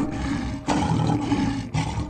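Lion roar sound effect: a long, rough roar that swells louder about two-thirds of a second in and holds for about a second.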